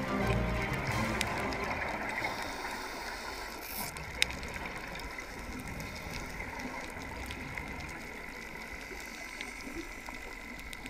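Background music fading out in the first second, then the steady underwater noise of scuba divers breathing out through their regulators, their exhaled bubbles rising, with a single sharp click about four seconds in.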